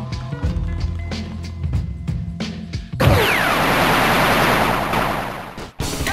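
Background music with a steady beat, then about three seconds in a loud, sustained blast of noise with a falling whistle, a sound effect that cuts off abruptly near the end. Fast rock music cuts in just before the end.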